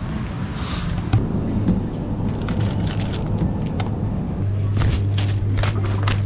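Background music with a steady low bass note and light clicking beats.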